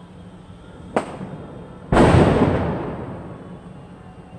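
Two firecracker bangs: a sharp crack about a second in, then a much louder bang just before two seconds that trails off in a long fading rumble.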